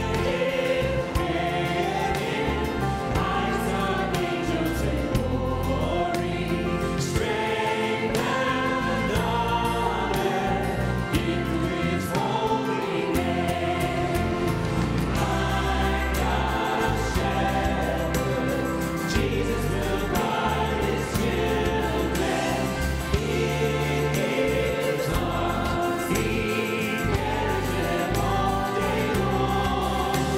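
Church worship band and singers performing a gospel hymn. Several voices sing the melody together over keyboards, electric bass and drums.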